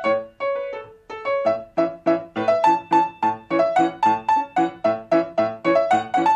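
Grand piano played solo: short, detached notes at about three or four a second, a repeated low note under a melody that steps up and down, with a brief lull about a second in.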